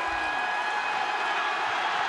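Large arena crowd cheering and applauding steadily.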